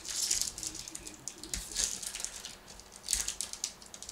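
Foil wrapper of a trading-card pack crinkling and tearing as hands rip it open, in several crackly bursts.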